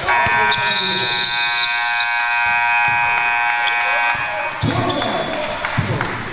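Gym scoreboard buzzer sounding one long, steady tone that cuts off about four and a half seconds in, marking the game clock running out at the end of the period. A couple of thuds follow near the end.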